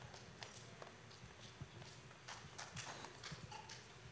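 Faint, irregular footsteps and small knocks of children walking across a stage, with more of them from about halfway through.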